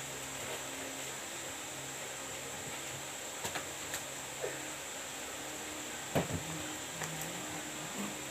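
Steady background hum and hiss, with a high faint whine, broken by a few light clicks and one louder knock about six seconds in from goods being handled on shelves.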